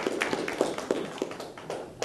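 Scattered clapping from a few people, irregular and thinning out toward the end.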